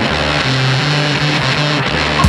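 Racing snowmobile two-stroke engines running at high, steady revs, the engine note holding level and stepping to a new pitch about halfway through.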